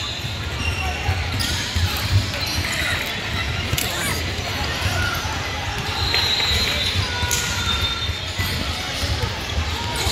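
Indoor basketball game: the ball bouncing on a hardwood gym floor and sneakers squeaking, with background voices echoing in a large hall.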